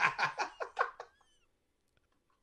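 A man laughing hard in quick, rhythmic bursts that fade out about a second in, ending in a thin, high squeak.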